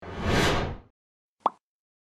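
Logo animation sound effects: a whoosh lasting just under a second, then a single short pop about a second and a half in.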